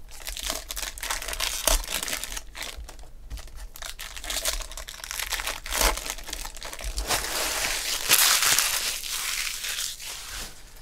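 The crinkly plastic wrapper of a 2016 Bowman Chrome baseball card pack is crinkled and torn open. It is loudest in a long stretch of crackling near the end.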